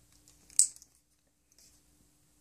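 A small plastic toy key pendant snapping open: one sharp click about half a second in, then a fainter click about a second later.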